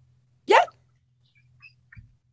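A person's short, high yelp with a sliding pitch, once, about half a second in.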